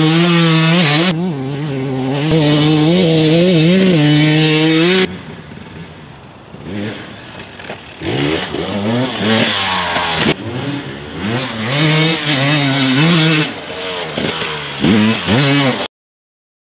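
Fuel-injected 300cc single-cylinder two-stroke engine of a KTM 300 XC-W TPI dirt bike, revving hard under load with its pitch rising and falling for about five seconds. It drops to a quieter note for a few seconds, then revs in short, uneven bursts before cutting off suddenly near the end.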